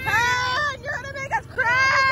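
Two long high-pitched shrieks from young girls, with short squeals between, over the steady low hum of a ride car's small engine.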